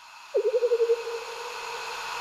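The lead-in to a new smooth jazz track: a hiss fading in, with one trembling note about a third of a second in that dies away within a second.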